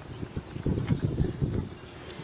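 Uneven low rumble of wind buffeting the microphone, with a few faint ticks.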